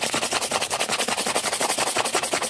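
Rapid, even ASMR trigger strokes close to the microphone, more than ten a second, sharp and crisp.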